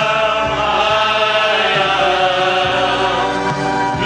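A men's vocal group singing a slow worship song in harmony, holding long notes.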